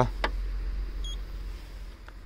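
Paint thickness gauge probe placed on a car's tailgate, with a click shortly after the start and a brief, faint high beep about a second in as it takes a reading. A steady low rumble runs underneath.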